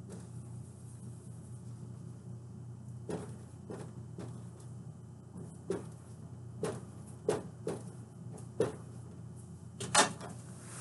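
Dry-erase marker tapping and scratching on a whiteboard in short separate strokes, over a steady low hum. A sharper knock near the end as the marker is set down on the board's tray.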